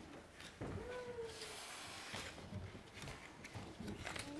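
Quiet room sound as a group handles things at a table: a brief faint voice about half a second in, then soft rustling and a few light knocks.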